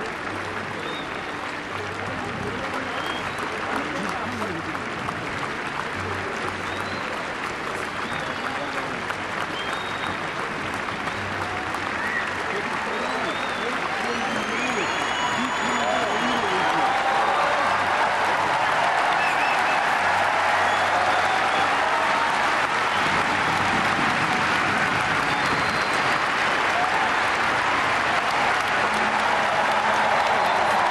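A large audience applauding, the applause swelling steadily louder, with voices in the crowd and a few high whistles near the middle.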